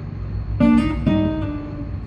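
Nylon-string classical acoustic guitar strummed: a chord about half a second in and a second about a second in, both left ringing.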